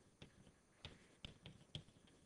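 Chalk tapping on a blackboard while a sentence is written: about five faint, sharp, irregular taps.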